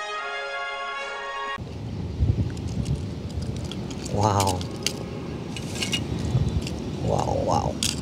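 Orchestral film music that cuts off abruptly about a second and a half in, followed by small die-cast toy cars clicking and clattering against each other as they are handled and piled up, over a low rumble. Short high-pitched vocal exclamations come once near the middle and twice near the end.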